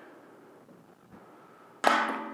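A ping-pong ball striking a metal trash can: one sharp clang with a short metallic ring near the end, after a quiet stretch while the ball is in the air.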